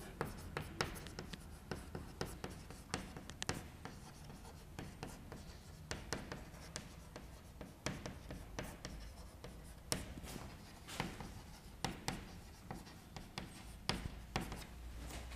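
Chalk writing on a chalkboard: a faint, irregular run of short taps and scratches as letters are written stroke by stroke.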